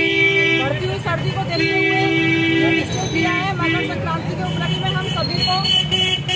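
Vehicle horns honking in street traffic: a long steady blast ending just under a second in, another from about one and a half to nearly three seconds, and a short one right after, with a person talking in between and afterwards.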